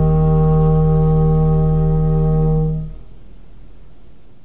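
Clarinet and pipe organ holding one long final note together, which stops about three seconds in; a quieter ringing tail lingers after it.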